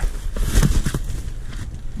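Cardboard parcels being shifted and bumped against one another by hand, a scatter of short knocks and scrapes over a steady low rumble.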